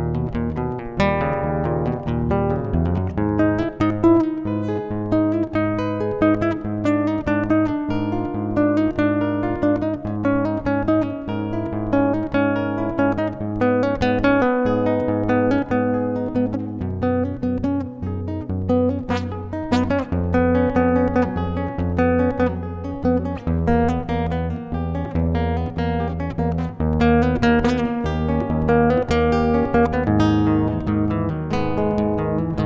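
Background music led by guitar: a quick run of plucked and strummed notes over a steady bass line.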